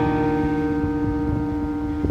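Amplified Taylor acoustic guitar's final chord ringing out, held steady and slowly fading at the end of a song.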